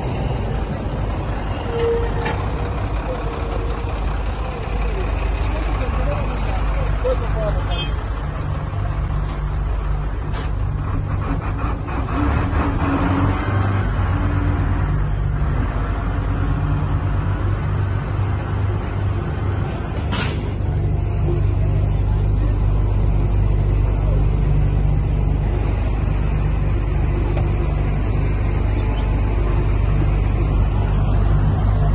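Diesel engine of a Vögele asphalt paver running steadily at close range, with a few sharp metallic clanks about ten seconds in and again about twenty seconds in.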